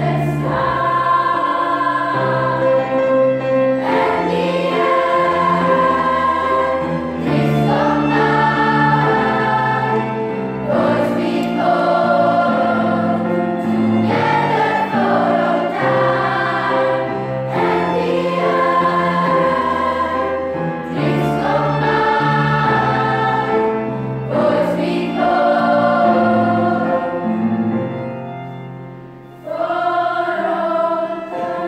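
A large youth choir singing in parts: sustained chords in phrases of a few seconds each. A phrase dies away shortly before the end and a new one starts.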